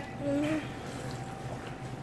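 A brief hummed vocal sound near the start, then faint gulping and sipping as a man drinks lemon water from a plastic tumbler.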